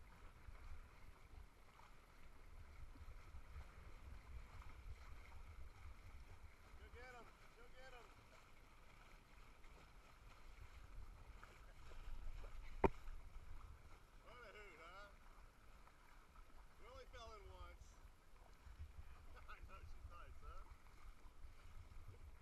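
Quiet outdoor ambience: a low wind rumble on the microphone with faint distant voices now and then, and a single sharp click about halfway through.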